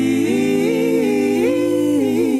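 Women's voices singing a sustained wordless chord in close harmony, about three parts moving together in slow steps, over a low held note that stops shortly before the end.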